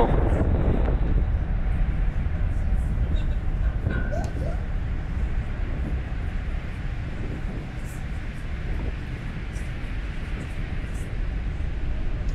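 Falcon Heavy's 27 Merlin engines rumbling on ascent, a steady low roar of rocket exhaust that slowly eases as the rocket climbs away.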